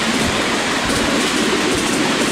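Ride-on miniature railway train running along the track, heard from aboard a passenger car: a steady rumble of wheels on the rails with a few faint knocks.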